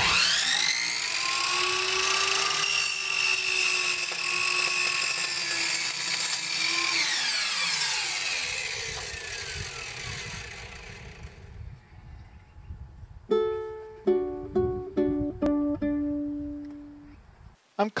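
Electric miter saw motor spinning up to a steady high whine, running for several seconds, then winding down as it coasts to a stop. Near the end, a few plucked guitar-like notes of background music.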